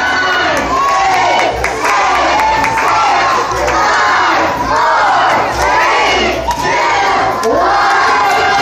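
A crowd of children shouting and cheering together, loud and continuous, in overlapping high-pitched yells that swell and dip.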